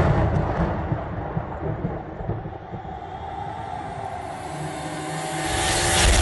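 Dramatic soundtrack of a stage performance: a low rumble fades through the middle and then builds to a loud rushing swell near the end.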